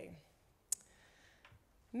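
A short pause in amplified speech, broken by one short, sharp click a little under a second in. Speech stops just at the start and picks up again at the end.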